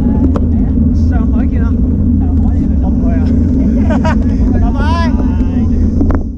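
Wind buffeting the microphone of a bike-mounted action camera while riding on a road bike, a steady low rumble.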